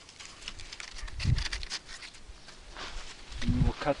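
Faint rustling and handling noise from the cellulose evaporative-cooler pad and mosquito net being pressed into the cooler frame, with a low bump about a second in. A man's voice starts just before the end.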